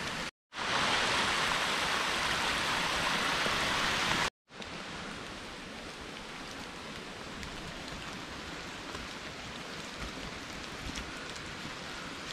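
Shallow water rushing steadily down a narrow stone channel for the first few seconds, cut off abruptly. After the cut, a softer steady hiss of rain in woodland.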